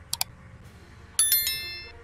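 Subscribe-animation sound effects: two quick mouse clicks, then about a second in a bright notification-bell chime that rings and fades.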